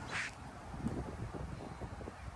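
A duck gives one short quack just after the start, over a low rumble in the background.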